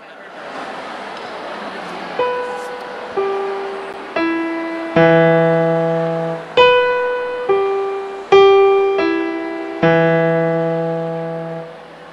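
Piano introduction: single notes and chords struck slowly, about one a second, each ringing on and fading, with a low bass chord joining twice. It starts about two seconds in, over a steady rush of background noise.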